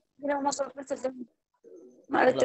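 A person's voice: a short utterance of about a second that the speech recogniser did not catch, followed by a faint low murmur near the end.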